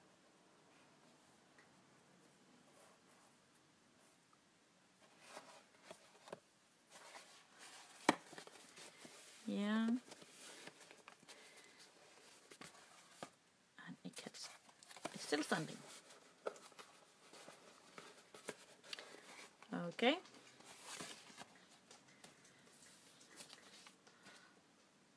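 Quiet handling of paper and craft materials, with a sharp click about eight seconds in and a few brief murmured vocal sounds in between.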